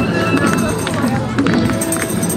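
Street-parade mix of traditional-style music with sharp percussion strikes and a crowd's voices and chatter, all at once and without a break.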